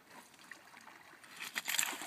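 Shallow water splashing briefly, starting about one and a half seconds in after a quiet start.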